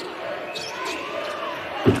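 Basketball game sound in a hall: low court and room noise, then one sharp thump of the basketball near the end.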